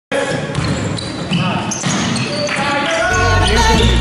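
Sounds of a basketball game on an indoor court, with players' voices. A music track with a deep bass beat comes in about three seconds in.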